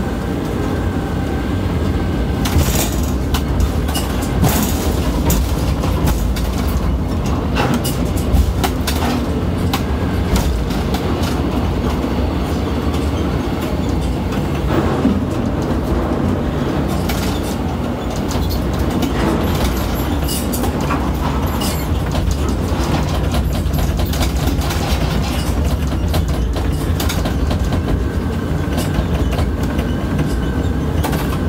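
Ship-to-shore container crane machinery heard from the operator's cab: a steady low rumble with scattered clicks and knocks as the trolley runs out over the ship and the spreader lowers down into the hold's cell guides.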